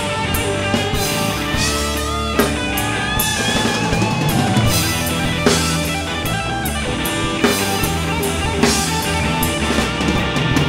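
A live rock band playing an instrumental passage: electric guitar over a drum kit, with a lead guitar line bending its notes a couple of seconds in.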